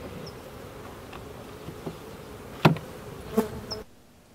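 Honeybees buzzing around an open hive, a steady hum, with two sharp knocks, the louder one a little past halfway and the other shortly after. The buzzing cuts off suddenly just before the end.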